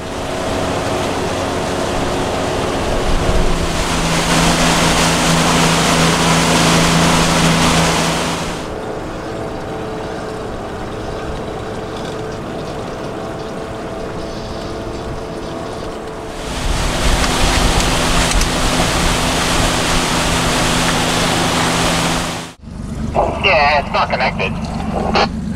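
Small boat's outboard motor running at a steady speed, with water rushing and wind noise while under way; two louder stretches around a quieter middle. It cuts off sharply shortly before the end, and a man's voice follows.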